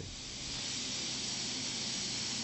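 Steady, even hiss with no distinct tones, strongest in the upper range.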